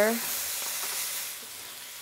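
Eggs and vegetables frying in hot oil in a wok: a steady sizzle that eases off a little past the middle.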